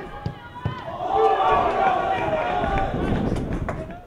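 Men's voices shouting and calling across an outdoor football pitch, loudest in the middle, with a few sharp knocks near the start and near the end.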